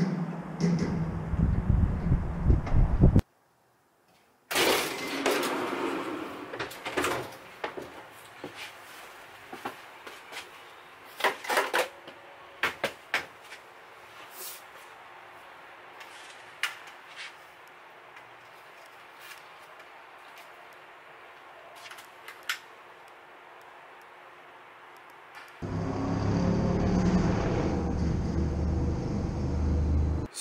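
Clicks, knocks and door-like bangs of detailing gear being handled in the open back of a van, scattered irregularly through the middle. Stretches of steady loud rumbling noise come at the start and again near the end.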